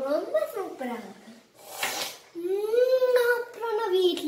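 A child speaking in a high voice, with a short breathy rush of sound about two seconds in.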